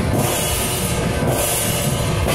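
Loud, continuous percussion-led music with drums and cymbals, the cymbals swelling about once a second.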